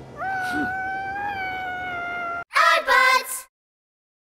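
A cartoon character's long wailing cry, held at a steady pitch for about two seconds, then a short, loud burst of several excited squealing voices.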